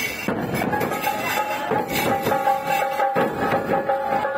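Procession drums beaten with sticks, a steady run of strokes, with a long held high note sounding over them from under a second in.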